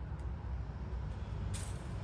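A low steady rumble with a short hiss about one and a half seconds in.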